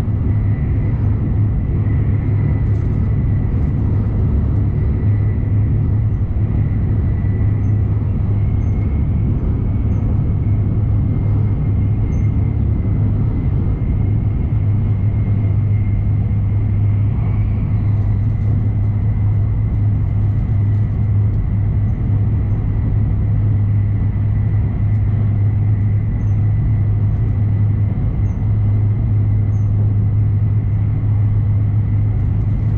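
Steady running noise inside an E7-series Shinkansen car travelling on the Joetsu Shinkansen: a constant low rumble with a faint steady high tone above it.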